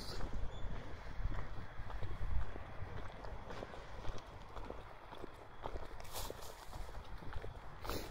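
Footsteps of a person walking, with a steady low rumble of wind and handling on a handheld camera's microphone. A brief hiss comes about six seconds in.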